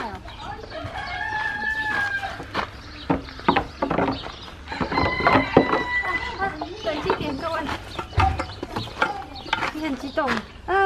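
A rooster crowing twice: one held call about a second in and another around five seconds in.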